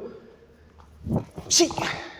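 A low thud about a second in, then a short, sharp exhaled shout ('xiu') from a man as he performs a jumping kick.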